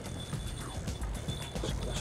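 Spinning reel's drag clicking in a fast rattle as a hooked fish pulls line off against a loosely set drag, with faint background music and wind rumble on the microphone.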